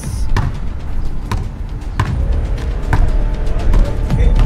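Background music with a steady deep low end, over which a basketball is dribbled on the court, bouncing about five times, roughly once a second.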